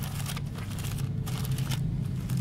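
Bible pages being turned, paper rustling in short irregular strokes, over a steady low hum.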